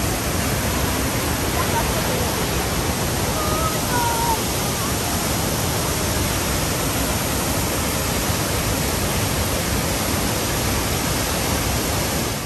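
Large waterfall in heavy flow: a loud, steady rush of water pouring over rock and crashing into the pool below.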